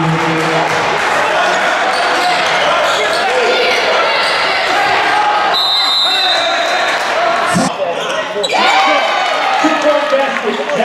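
Live basketball game sound in a gym: crowd voices and shouts over a ball bouncing on the hardwood floor. A referee's whistle sounds once, held for about a second around the middle. The sound changes abruptly about three-quarters of the way through.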